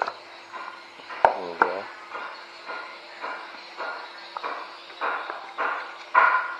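Rigid cardboard box being opened by hand: the lid worked off its tray, with short rubbing and scraping sounds about twice a second. A sharp tap and a brief pitched sound come about a second in.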